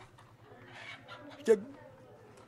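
Chickens clucking faintly in the background, with one short spoken word from a man about one and a half seconds in.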